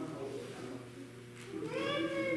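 A young child's high-pitched vocalisation, rising and then falling, starts about one and a half seconds in, over faint murmuring voices and a low steady hum.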